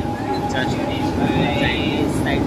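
Mumbai suburban electric local train running, heard from inside the coach by its open doorway: a loud, dense rumble with a steady high hum over it.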